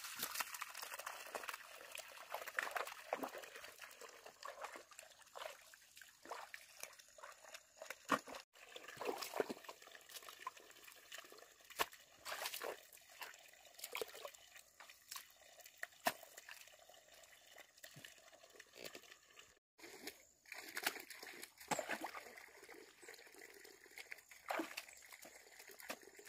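Shallow muddy water splashing and trickling as hands pat wet mud and bare feet wade through it: many small, irregular splashes and squelches over a faint steady trickle.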